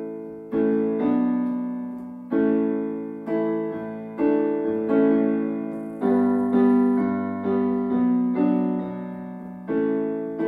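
Casio Privia digital piano playing slow chords with both hands, a new chord struck about once a second and left to ring and fade before the next.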